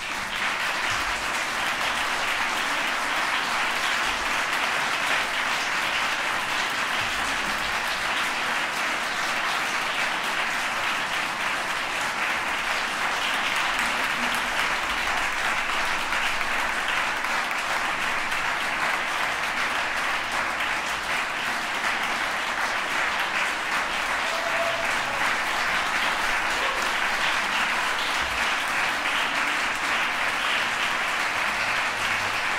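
Audience applauding, swelling up in the first moment and then holding steady.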